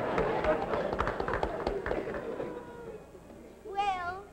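Voices with many sharp taps, fading away over the first three seconds or so, then a short wavering note near the end.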